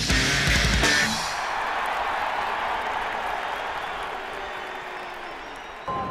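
Live rock band with drums and electric guitar that cuts off about a second in, followed by a large crowd cheering and applauding, slowly fading away.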